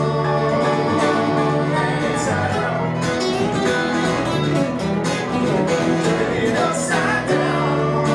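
Live band music: acoustic guitars, electric bass and keyboard playing together.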